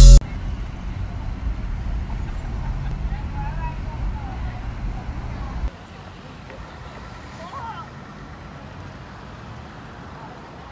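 Outdoor city street background: a low traffic rumble that drops away suddenly a little past the middle, leaving a quieter hum with faint voices of passers-by. Loud music cuts off at the very start.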